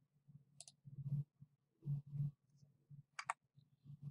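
Computer mouse button clicks: one sharp click about half a second in and a quick double click near the end, with a few soft low hum-like sounds in between.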